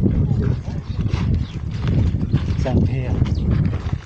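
Several people talking as they walk along in a group, over a steady low rumble.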